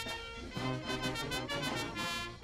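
Brass band with trumpets, trombones, sousaphones and drums playing a festive tune, the brass over a steady drum beat.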